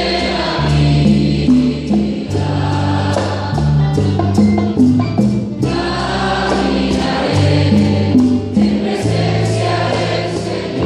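Worship song sung by a group of voices over a bass line with a steady beat.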